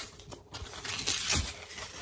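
Vertical window blind slats being pushed aside by hand, rustling with a few light clicks and knocks.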